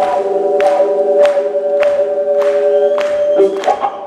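Live blues-rock band playing: a long held note over a steady drum beat, a cymbal or hi-hat struck about every 0.6 seconds. The held note breaks off about three and a half seconds in.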